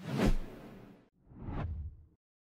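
Two whoosh transition sound effects: one at the start that fades within about a second, and a second that swells and cuts off abruptly near the end.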